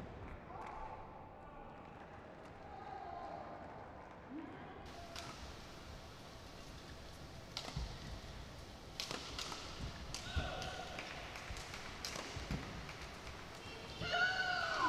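Badminton rally: sharp racket strikes on the shuttlecock, mostly in the second half, and short squeaks of players' shoes on the court mat.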